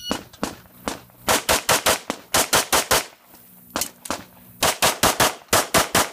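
Handgun fired rapidly in quick pairs about a fifth of a second apart, in two fast strings with short pauses between them.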